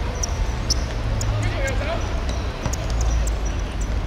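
Five-a-side football on a hard outdoor court: a few sharp taps of the ball being kicked and bouncing on the court surface, and a short shout from a player about one and a half seconds in, over a steady low rumble.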